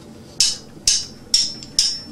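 Drummer's count-in: four sharp clicks, evenly spaced about two a second, setting the tempo for the band's entry.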